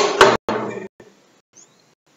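Two sharp knocks of a wooden metre rule against a whiteboard, about a fifth of a second apart, followed by a short scrape of about half a second.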